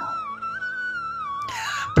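Background music: a single high melodic line that wavers and glides up and down in pitch, dipping lower near the end. A short hiss comes just before the end.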